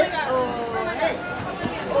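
Voices chattering and calling, with no clear words.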